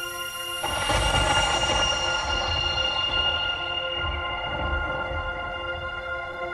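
High school marching band opening its field show: a held chord, then a sudden loud entrance about half a second in, with a high wash and a low rumble that fade away over the next few seconds while the held notes carry on.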